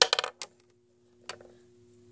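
Small hard plastic toy figures clicking and knocking as they are handled and set down: a quick cluster of clicks at the start and one more a little over a second in.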